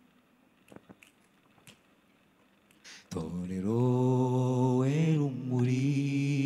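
About three seconds of near silence with a few faint clicks, then an a cappella choir comes in with a long held note. The voices bend in pitch briefly and keep singing.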